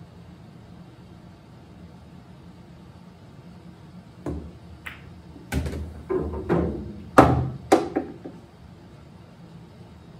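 Pool balls clacking on a billiard table: the cue striking the cue ball, then balls colliding and knocking against the rails, a run of sharp knocks that starts about four seconds in, with the loudest around seven seconds.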